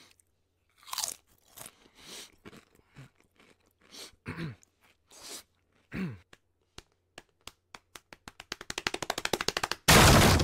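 Cartoon sound effects: crunchy chips being chewed, a string of separate crunches over the first six seconds. Then come quick taps that speed up and grow louder, cut off near the end by a loud crash as a door is smashed in.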